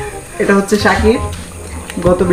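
Men's voices talking briefly over background music.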